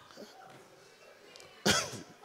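A short lull in the room, then one short, loud cough close to the microphone about one and a half seconds in.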